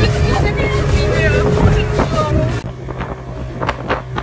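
Passenger boat's engine running steadily, heard inside the cabin, with voices over it. Partway through the sound cuts abruptly to a quieter stretch where the low engine hum goes on with a few sharp knocks.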